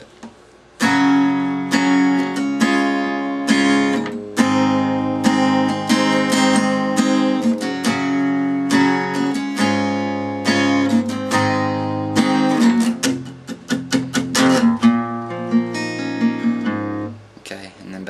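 Acoustic guitar, tuned a half step down, strumming a run of chords in a steady rhythm, starting about a second in and stopping about a second before the end.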